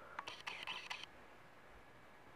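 Faint handling noise: a few light clicks and a brief rustle in the first second, then quiet room tone.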